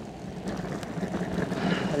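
Beastboard Aurora electric skateboard rolling over rough asphalt: a steady rumble of the wheels on the road with a low hum, growing a little louder towards the end.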